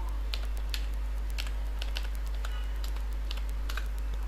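Computer keyboard being typed on, a run of irregular key clicks, over a steady low hum.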